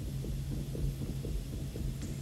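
Low, steady droning hum in the drama's background score, with a faint regular pulse about four times a second.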